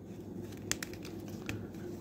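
Hands handling and twisting a plastic action figure at its waist joint, with a few faint, light clicks over a low room hum.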